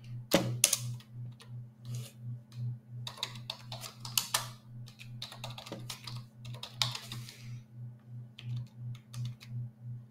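Computer keyboard typing: short runs of keystroke clicks with brief pauses between them.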